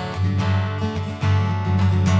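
Solo fingerstyle playing on a Taylor cutaway steel-string acoustic guitar: picked treble notes over a ringing bass, with a new bass note and chord struck a little past halfway.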